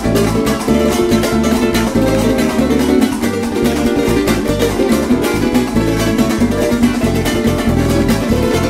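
Three Venezuelan cuatros strummed fast and busy in a joropo rhythm, over a bass guitar playing a moving bass line.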